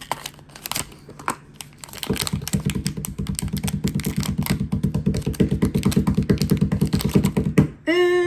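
Blind-box pin packaging handled and a foil pouch torn open, with faint crinkles and clicks. From about two seconds in until just before the end, a louder fast, even low pulsing buzz runs on.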